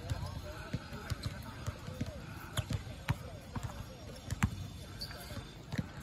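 Basketballs bouncing on an outdoor hard court: a run of irregular dull thuds from more than one ball, the loudest about four and a half seconds in.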